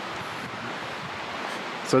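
Steady outdoor wind noise, an even rushing hiss with no distinct strikes.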